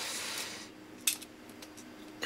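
Hard plastic parts of a Transformers Blitzwing action figure scraping against each other as they are pushed together, fading after about half a second, then one sharp click a little after a second in.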